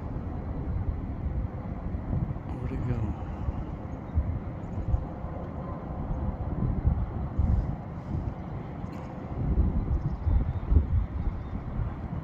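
Wind buffeting a handheld phone's microphone: an uneven low rumble that swells and falls, with a faint steady hum through the middle.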